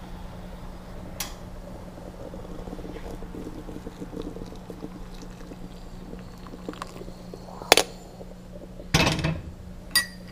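Coffee poured from a stovetop moka pot into a ceramic bowl, a steady pouring trickle through the middle. Near the end come two sharp metal knocks, the louder first, then a short clatter, the loudest sounds here.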